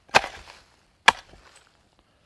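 Hoe chopping into the ground twice, about a second apart, marking a spot in the soil.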